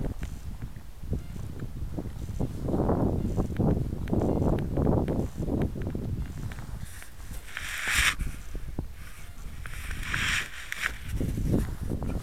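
Footsteps scuffing along a dirt path over dry leaves and twigs, with uneven rustling and rumbling close to the microphone. Two short, louder bursts of rustle come about eight and ten seconds in.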